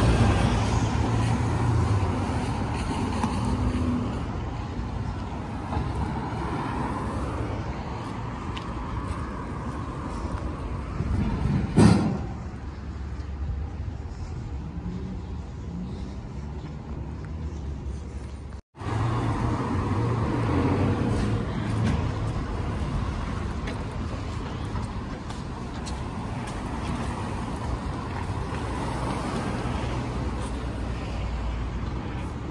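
Steady city street traffic, cars and buses passing with a low engine rumble. About twelve seconds in there is a sudden loud thump.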